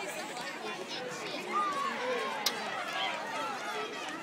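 Spectators' chatter: many voices talking over one another at once, with one sharp click about halfway through.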